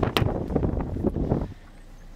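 Wind buffeting the microphone, with a single sharp click just after the start as the rear door latch of a Hyundai i30 is opened. The wind noise drops away about one and a half seconds in.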